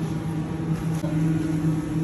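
Steady machine hum of commercial kitchen equipment, holding two low tones, with a faint click about a second in.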